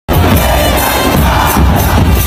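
Loud crowd cheering mixed with music, starting suddenly at the very beginning.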